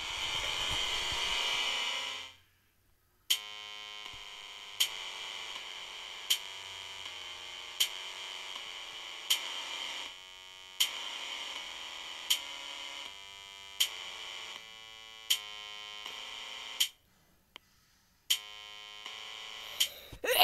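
Chrome Music Lab Song Maker playing back a simple electronic tune: synth chords changing in steps, with a sharp electronic drum hit about every second and a half. It opens with a short buzzing hiss, and the music pauses briefly about three seconds from the end.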